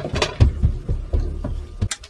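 Heavy toddler footsteps, irregular low, muffled thumps from the floor above as a 30-pound one-year-old runs around the house.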